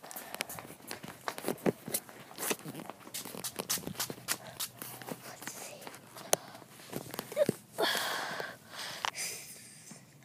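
Scattered clicks and knocks from footsteps and handling of objects, with a short rustling noise about eight seconds in.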